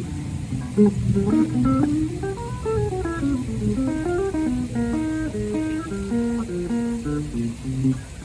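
A live quartet of electric guitar, trombone, upright double bass and drums playing, with a melody moving in short stepped notes over the bass and drums.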